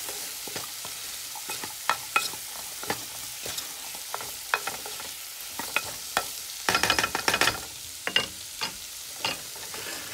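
Diced onion, celery and carrot sizzling in oil in a nonstick pot while a spatula stirs them, with scattered scrapes and taps against the pan over a steady sizzle. A busy run of scraping comes about seven seconds in.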